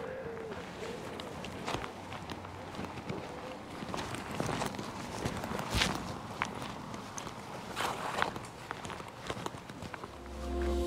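Footsteps of a person walking along an earth and grass footpath, soft and uneven.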